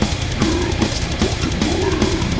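Heavy metal music: a loud, dense band recording with distorted guitar and a drum kit hitting about four or five times a second.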